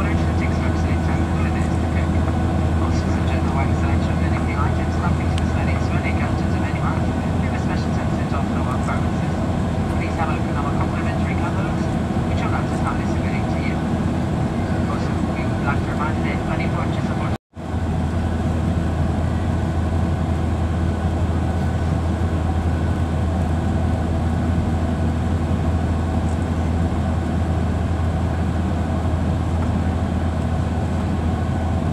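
Steady cabin noise of a Boeing 737-800 in flight: the low drone of its CFM56 turbofan engines and the rush of air, heard from inside the cabin at a window seat over the wing. The sound cuts out to silence for a moment a little past halfway, then resumes unchanged.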